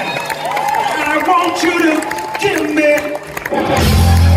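Live band with a male lead vocal in a stripped-back stretch where the bass drops out, over crowd noise; near the end the full band comes back in with a heavy bass.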